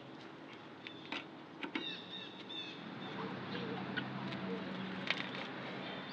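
Lug wrench on the spare tire's lug nuts giving a few sharp metallic clicks as the nuts are tightened down, with birds chirping briefly about two seconds in and a low steady hum coming in about halfway.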